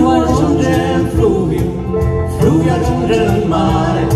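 Live band music: strummed acoustic guitars, bass guitar and electric guitar, with a wavering melody line carried over the chords.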